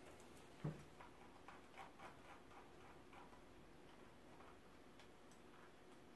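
Faint, irregular clicking of a computer keyboard and mouse, with one slightly louder knock just under a second in.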